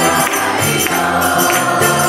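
Live devotional group chanting (kirtan): a woman sings lead into a microphone over strummed ukulele and electric bass, with jingling hand percussion and a group of voices singing along.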